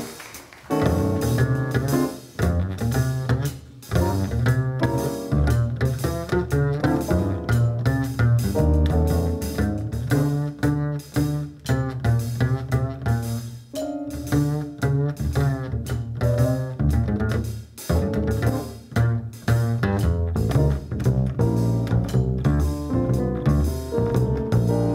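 Upright double bass played pizzicato in a solo: a steady stream of plucked notes, starting after a short pause.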